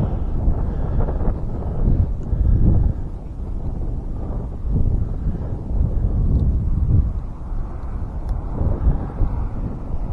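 Wind buffeting the microphone in uneven gusts, a low rumble that swells and fades every second or two.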